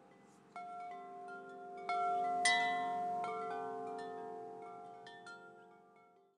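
Wind chimes ringing: irregular strikes of several pitched tones that overlap and ring on, the loudest about two and a half seconds in, all fading away near the end.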